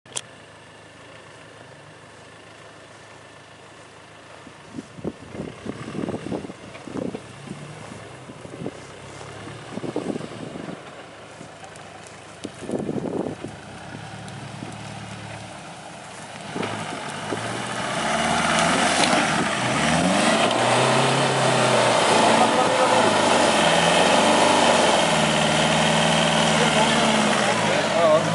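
Land Rover Defender 90 Td4's turbo-diesel engine, faint at first, then from a little past halfway revving up and down repeatedly and growing loud as the 4x4 crawls through a muddy ditch and comes up close.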